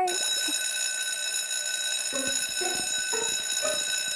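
Electric school bell ringing loudly and steadily.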